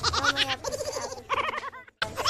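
A child's high-pitched voice quavering in short bursts, close to the microphone, with a bleating, wavering pitch rather than plain words.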